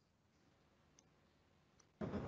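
Near silence: room tone, with two faint clicks, one about a second in and one near the end.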